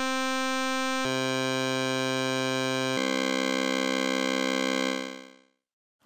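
Padshop 2 granular synthesizer holding one note on its Multipulse sample while the grain duration is stepped from 1 to 2 to 4. The buzzy tone drops in pitch about a second in and again about three seconds in, each doubling of grain duration lowering it by an octave, then fades out near the end.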